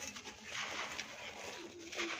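Hands squeezing and crushing a dry moulded sand-cement ball, a gritty crunching and crumbling as it breaks apart and grains spill through the fingers. A pigeon coos low near the end.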